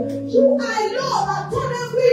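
A woman's voice, amplified through a microphone, chanting or singing in prayer over music with sustained low notes.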